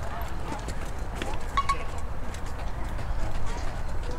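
Voices chatter at a distance while light clicks and taps sound irregularly throughout, over a steady low rumble.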